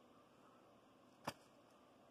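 Near silence: quiet room tone with a single short click a little over a second in.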